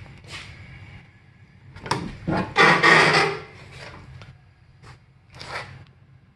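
Door of a rusty 1977 Pontiac Can Am being opened: a couple of sharp clicks about two seconds in, then a loud scraping rasp lasting under a second as the door swings, and a shorter scrape near the end.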